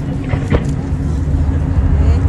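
Steady low rumble of an outdoor fireworks crowd, with one sharp firework pop about half a second in.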